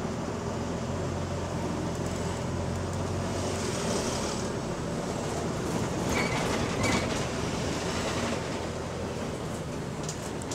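Interior noise of a Wright-bodied Volvo double-decker bus: the diesel engine's steady low drone and running noise. About four seconds in there is a hiss of air, and a little later two short high tones.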